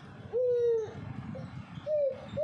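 Baby's high-pitched vocal sound: one held "ooh"-like note lasting about half a second, then a short rising-and-falling note near the end.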